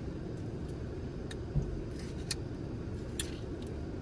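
Quiet eating of frozen custard with a plastic spoon: a few faint spoon and mouth clicks and one soft thump, over a steady low hum inside a car.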